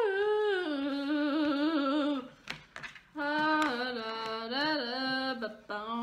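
A voice singing a wordless tune in long held, wavering notes, stepping down in pitch about a second in, with a brief break near the middle before it carries on.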